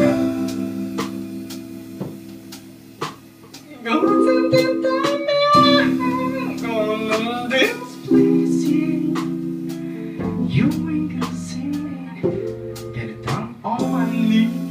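Small live band playing a slow soul-jazz groove: sustained electric guitar chords over drums with regular cymbal and stick strikes. A wavering lead melody line comes in about four seconds in and fades out around eight seconds.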